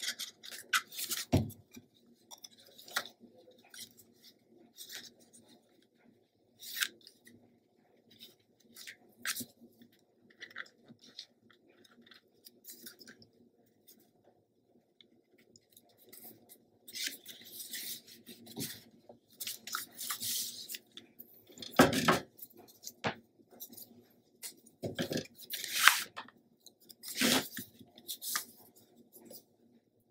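Hands handling paper and cardstock on a cutting mat: scattered taps, slides and rustles, with a cluster of louder rustling a little past halfway and a few sharp knocks near the end.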